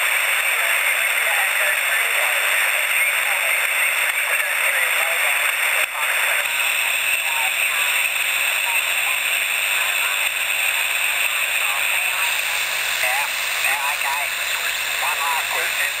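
Steady hiss and static from a homebrew direct conversion shortwave receiver's speaker tuned to the 20 metre band, with a weak single-sideband voice faintly heard through the noise and growing clearer near the end.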